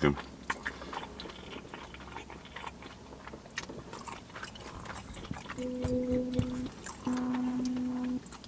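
Quiet eating sounds: faint chewing and small mouth clicks as pizza is eaten. Near the end come two steady low hums of the same pitch, about a second each with a short gap.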